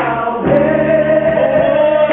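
Gospel choir singing, holding long chords that shift to a new chord about half a second in.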